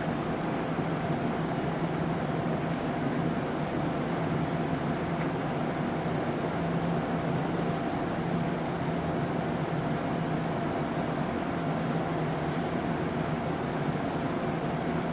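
Steady room tone: a continuous mechanical hum holding the same pitch, over a hiss, with a few faint ticks.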